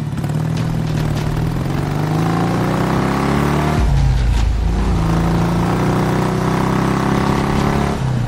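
Yamaha motorcycle engine revving as it accelerates away. Its pitch climbs, drops suddenly at a gear change about four seconds in, then climbs again.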